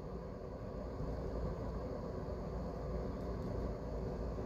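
Steady low background hum of room noise with a faint steady tone, and no distinct sounds.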